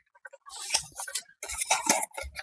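Cardboard packaging being unfolded and handled: light rustles, scrapes and small taps that start about half a second in.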